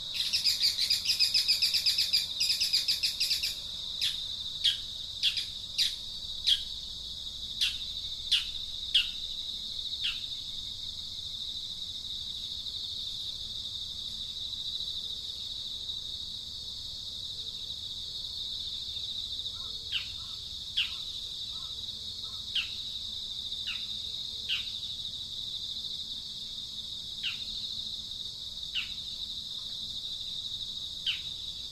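A steady high insect drone, with a bird giving a fast pulsing trill for the first few seconds, then short, sharply falling calls repeated about once a second in two runs.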